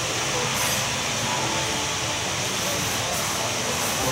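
Steady background hum and hiss with a few faint held low tones, no clear events.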